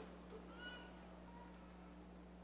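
Near silence: room tone with a steady low hum, and a faint, brief high-pitched sound a little after half a second in.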